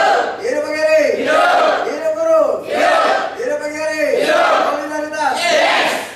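A large group of people shouting a rhythmic chant in unison, a group yell with loud, steady shouted syllables about two a second.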